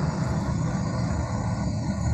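Steady low rumbling noise with a hiss over it, coming through a video-call participant's open microphone while her voice has dropped out.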